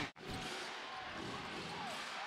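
Faint basketball arena background with a ball bouncing on the hardwood court. The sound cuts out abruptly for an instant near the start.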